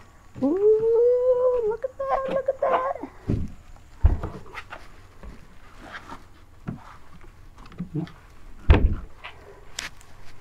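A drawn-out whining voice that rises and then holds steady, followed by a few short whines, then several dull thumps as a wrapped kayak is moved on a concrete floor.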